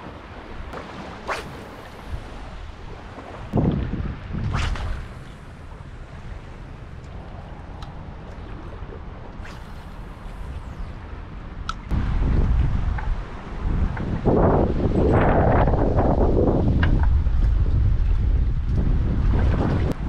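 Wind buffeting the microphone over choppy water, fairly light at first with a few brief sharp sounds, then gusting hard from a little past halfway on.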